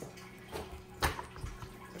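A single sharp click about a second in, over a faint steady hum and a few soft low thumps.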